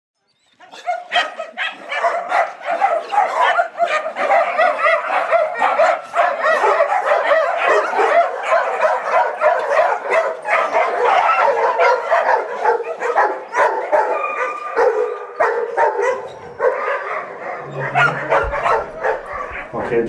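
Many dogs barking and yipping at once in a continuous overlapping chorus, with no let-up.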